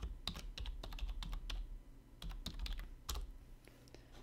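Computer keyboard typing: a quick run of keystrokes, a short pause about two seconds in, then a few more that thin out near the end.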